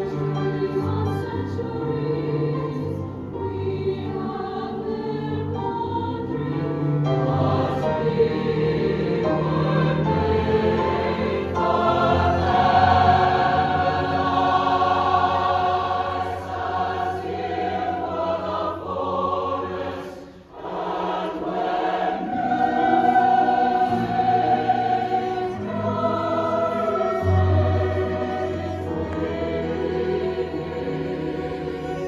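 Large SATB choir singing a slow, sustained choral piece, accompanied by piano and cello. The sound swells in the middle, breaks off briefly about two-thirds of the way through, then comes back in.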